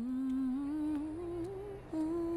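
A woman humming a slow, wordless melody. The pitch wavers and climbs gently through one phrase, then breaks off briefly near the end before the next phrase begins.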